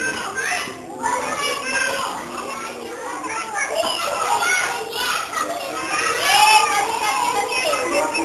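Many small children's voices chattering and calling out over one another, with one child's call rising loudest about six seconds in.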